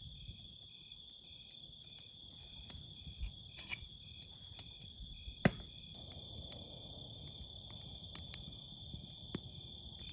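Crickets chirping: a steady high trill with a second cricket's evenly pulsed chirp beneath it. Faint scattered crackles come from the campfire, with one sharp snap about five and a half seconds in.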